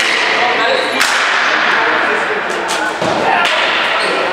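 Ball hockey in play: sticks cracking against the ball and against each other, with one sharp crack about a second in and a duller thud near three seconds, over players' shouts.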